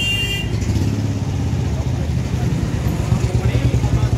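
Street traffic noise: a steady low engine rumble from motor vehicles, with voices mixed in and a brief high tone near the start.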